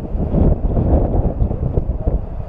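Wind buffeting a camera's microphone: a loud, uneven low rumble.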